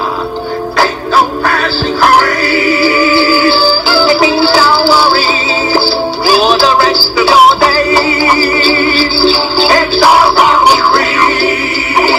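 A song playing: music with a singing voice whose held notes waver with vibrato.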